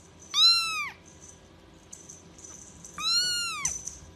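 A young kitten mewing twice, high-pitched: two short calls about three seconds apart, each rising and then falling in pitch.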